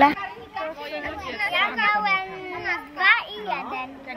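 Children's voices talking in the background, high-pitched and overlapping, with no other distinct sound.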